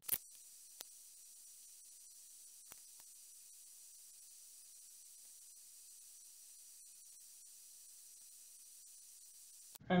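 Very quiet steady high hiss of the recording, with a few short faint clicks in the first three seconds.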